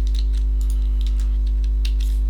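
A few scattered clicks of a computer keyboard and mouse as a block of code is copied and pasted, over a steady low electrical hum that is the loudest sound throughout.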